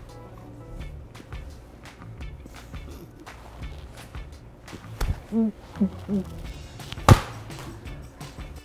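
A flour tortilla slapped against a face: a smack about five seconds in, then laughter, then a much louder, sharp slap near the end, over background music with a beat.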